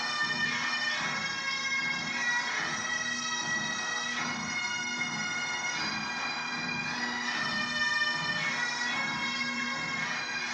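Massed military bagpipes playing a slow tune over their steady drones, heard through a television's speaker.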